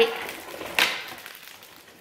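A brief crackle of cardboard about a second in, as a small advent calendar box is handled and opened.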